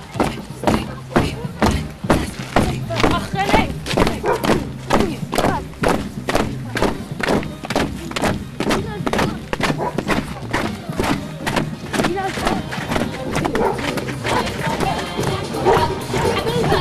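Many footsteps thudding on a thin concrete footbridge deck as a crowd of children walks across it, a dense run of thuds about three a second. Music and voices play underneath.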